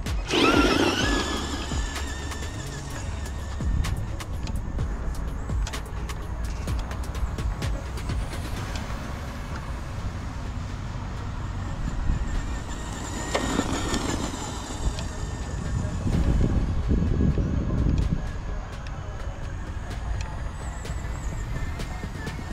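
Traxxas Rustler RC truck's electric motor whining up and down as it accelerates and slows, with the loudest rising-and-falling whines about half a second in and again around thirteen seconds, over background music.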